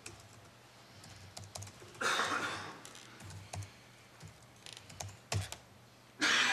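Laptop keyboard being typed on: scattered key presses in short runs. A brief rush of noise about two seconds in is the loudest moment.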